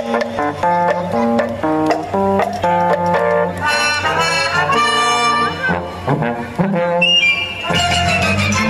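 Instrumental music playing, a lively melody of short held notes stepping up and down.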